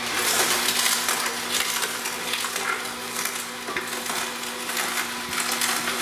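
Omega NC900HD slow masticating juicer running, its auger crushing celery stalks: a steady motor hum under irregular crunching. The fibrous celery is being run through last to clear the leftover greens out of the auger.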